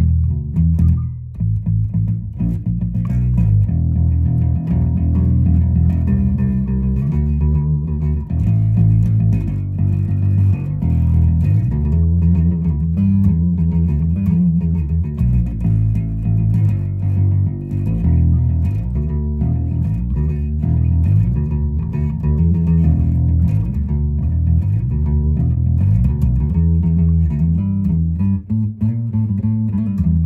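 Gretsch G2220 Junior Jet II electric bass played fingerstyle through an amplifier: a continuous, busy bass line of quick plucked notes that keeps moving in pitch.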